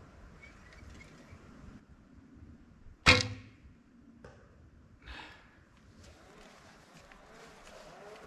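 A bow shot: one sharp, loud snap of the released bowstring about three seconds in, with a short ringing tail. A second, fainter sound follows about two seconds later.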